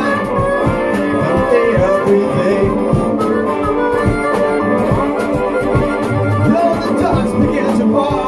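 Blues harmonica solo, with wavering held and bent notes, over strummed acoustic guitar and a steady drum beat.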